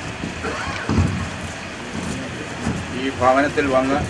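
Indistinct voices over a steady background hiss, with one person's voice louder for about the last second.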